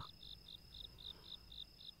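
Faint cricket chirping, an even pulse of about four chirps a second.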